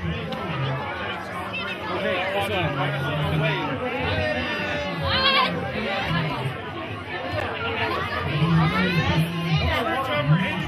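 Bar crowd talking over one another, many voices at once, with music playing underneath. About five seconds in, one voice sweeps sharply up in pitch above the chatter.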